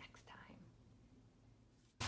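Near silence: room tone, with the faint end of a spoken word in the first half second.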